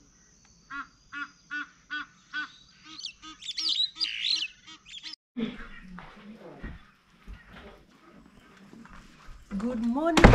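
Birds calling at dawn: a run of short, evenly spaced calls, about two to three a second, then a busier burst of higher calls with gliding pitch. About five seconds in, this breaks off into a steady hiss with scattered low knocks.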